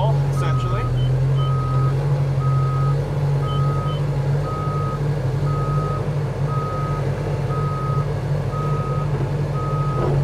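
Crawler bulldozer's reverse alarm beeping about once a second over its diesel engine running steadily, as the dozer tracks slowly backward.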